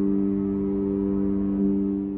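Sampled vintage Thomas console organ (Soundiron Sandy Creek Organ virtual instrument) holding a G perfect-fifth chord as a steady sustained tone, which starts to fade near the end as the keys are released.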